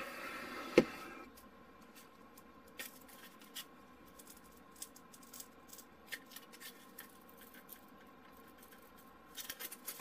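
Faint handling noise of a strip of XPS foam insulation sheet being flexed and pulled at to test a glued joint: scattered small ticks and scratches. A single sharp tap comes about a second in.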